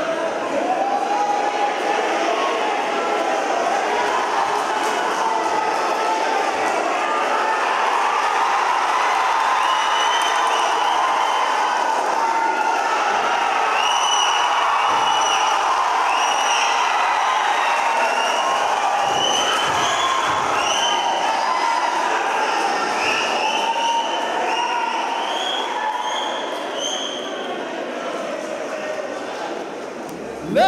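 Large indoor crowd of cage-fight spectators yelling and cheering without a break. From about ten seconds in, many short high-pitched calls ring out above the din. The noise eases slightly near the end.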